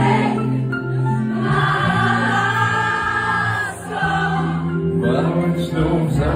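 Live band music: several voices singing together over acoustic and electric guitars.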